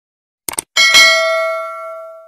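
A mouse-click sound effect, then a bell ding that rings out and fades over about a second and a half: the notification-bell sound of a subscribe animation.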